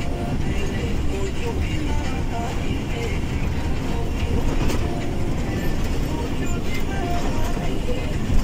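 Inside a moving truck's cab: steady engine and road rumble, with a few sharp clicks over it.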